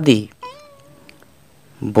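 Speech trails off, then a faint, wavering, drawn-out cry of under a second, like an animal call, before speech resumes near the end.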